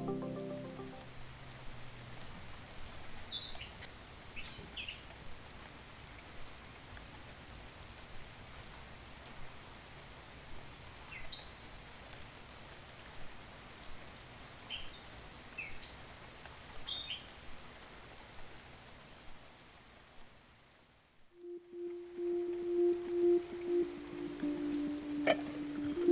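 Faint outdoor ambience: a steady soft hiss with scattered short bird chirps, a few at a time, through most of the stretch. Soft background music fades out at the start and a new sustained note begins near the end.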